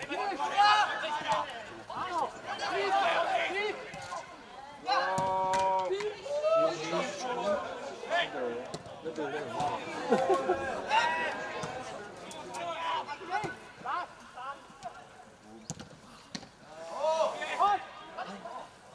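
Footballers shouting and calling to each other during play, with one long drawn-out shout about five seconds in. A few short sharp knocks of the ball being kicked come through between the calls.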